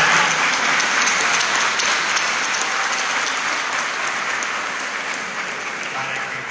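Congregation applauding, loudest at the start and slowly dying down.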